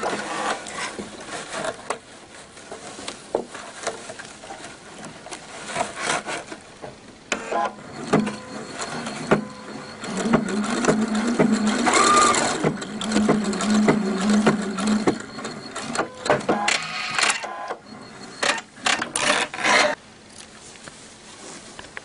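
Domestic sewing machine stitching in short runs with stops between them, the longest run in the middle, as a small tack stitch is sewn over elastic ends on tulle to keep the knot from slipping.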